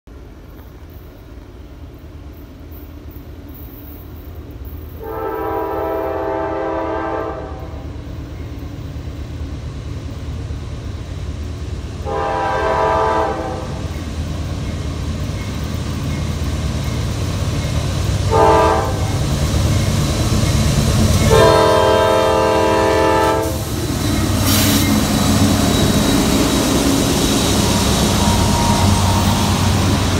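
Freight train's locomotive horn sounding the grade-crossing signal as the train approaches: two long blasts, one short, then a long one. Under the horn the train's rumble grows steadily louder, and in the last few seconds the freight cars roll past the crossing.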